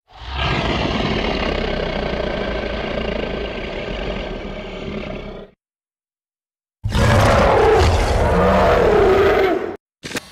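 Dinosaur roar sound, twice: a long roar of about five seconds, then, after a second of silence, a shorter roar of about three seconds that wavers in pitch.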